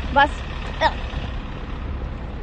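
Steady low hum of city street traffic, with a woman's brief spoken syllable early on and another short vocal sound a little under a second in.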